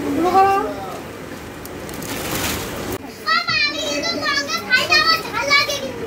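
Voices: a short spoken phrase at the start, then, after a brief hiss, a child's high-pitched voice talking for the last three seconds.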